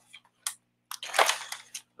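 A breath drawn into a close headset microphone, with a few short clicks before it and a faint steady electrical hum underneath.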